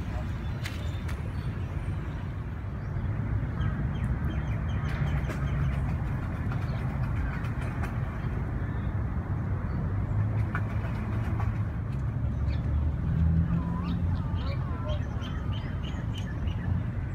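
Outdoor lakeside ambience: indistinct voices over a steady low rumble, with a few short rising-and-falling calls near the end.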